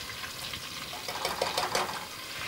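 Hot olive oil and bacon grease with garlic sizzling and crackling in a stainless steel pot as canned black beans and their syrupy liquid are poured in from the can. The cooler beans take the heat out of oil that was running a little hot.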